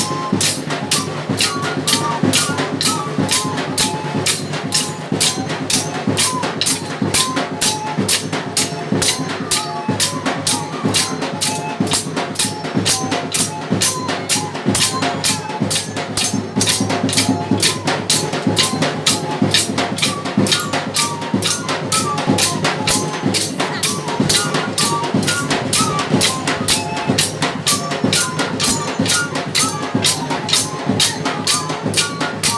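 Live folk dance music: drums and jingling percussion beat steadily at about three strokes a second, under a wavering melody line.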